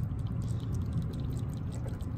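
A land crab blowing bubbles at its mouth, a faint fine crackling of popping bubbles over a steady low rushing noise.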